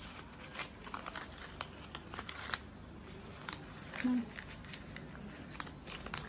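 Thin paper wrapping sheet rustling and crinkling in the hands as it is folded around a small bouquet of paper daisies, in short scattered crackles.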